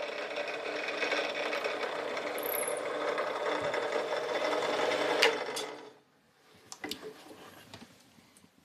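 Bench drill press running steadily as its bit drills a small hole through a wooden pendant held in a machine vise. There is a click about five seconds in, and the motor stops about six seconds in.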